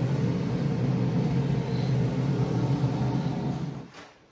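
Steady machine hum with a low drone, from electrical equipment running close by. It cuts off abruptly near the end.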